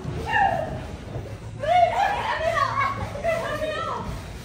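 Excited, high-pitched shouting and squealing voices, in two bursts: one short cry right at the start, then a longer run of yelling from about a second and a half in to the end.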